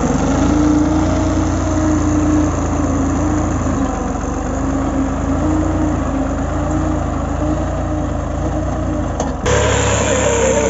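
New Holland 3630 TX Super tractor's diesel engine running steadily under load as it drags a rear leveling blade through loose soil, its pitch wavering slightly. Near the end the sound changes abruptly to a closer, louder engine note.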